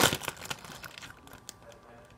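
A clear plastic zip-top bag crinkling and crackling as hands pull at it to open it. The loudest crackle comes right at the start, then smaller ones follow and die away after about a second and a half.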